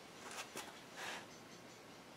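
Quiet workshop room tone with a few faint, short rustles of hands and body moving against the wooden stock.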